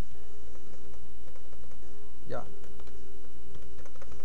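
Computer keyboard typing as numbers are keyed into a spreadsheet cell, over a steady low hum.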